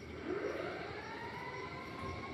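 Motor of a PRO TECH DSH 250 heavy-duty automatic sliding door operator whining as it drives the glass panels open, its pitch rising over the first second or so and then holding steady.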